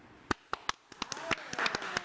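Hands clapping: a string of sharp, uneven claps, several a second.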